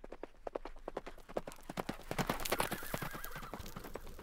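Horse hooves galloping, a rapid run of hoofbeats that grows louder, with a horse whinnying for about a second starting about two and a half seconds in.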